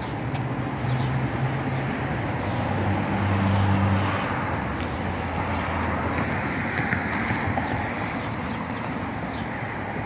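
Passing road traffic: a car's engine and tyres, with a low engine hum that swells about three to four seconds in and then fades into a steady traffic noise.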